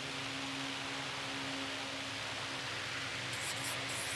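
Steady background hiss with a faint low hum. Near the end, a few short, high scratchy strokes of a marker writing on flipchart paper.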